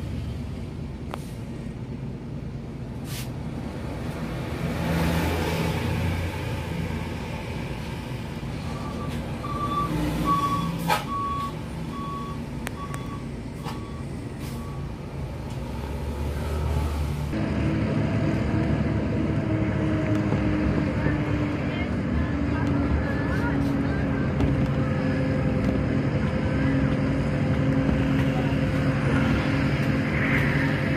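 Engine and road noise heard from inside a moving bus, with a string of evenly spaced high beeps for several seconds about a third of the way in. About halfway through the sound changes suddenly to a steadier, droning engine note.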